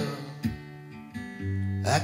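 Acoustic guitar strummed twice in a lull between sung lines, the chords ringing out, with a low note held under the second strum. A voice starts singing just before the end.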